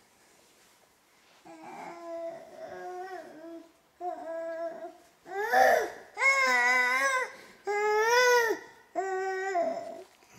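Baby babbling in high-pitched, drawn-out vocal sounds. It starts after a quiet second or so and gets louder from about the middle, ending in several long, held calls.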